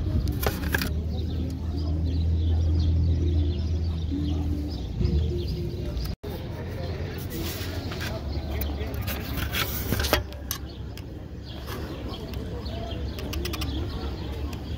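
Street ambience: a low vehicle rumble, strongest in the first five seconds, under indistinct voices and a few bird chirps, with a brief break in the sound about six seconds in.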